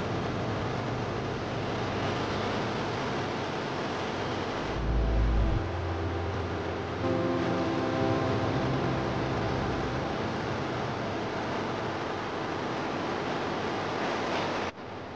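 Mountain stream rushing over a rocky bed, a steady noise of running water.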